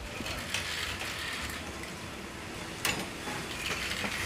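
Humanoid robot handling dishes and cutlery: a steady low mechanical rattle with light clicks, and one sharp click about three seconds in.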